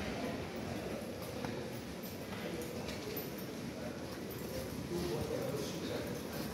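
Footsteps of several people walking on a tiled station floor, with a faint murmur of voices.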